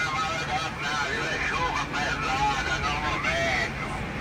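A voice talking quietly over the steady low drone of a Scania truck cab at highway speed, with rain on the windscreen.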